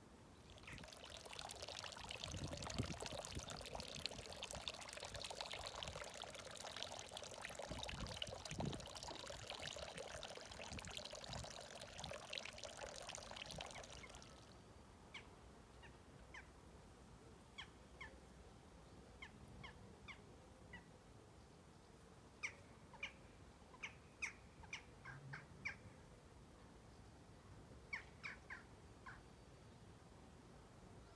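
A steady rushing noise runs for the first half and cuts off suddenly. After it, garden birds give short, scattered chirps against a quiet background.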